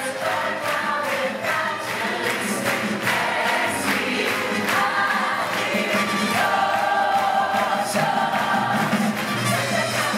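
Music with a choir singing.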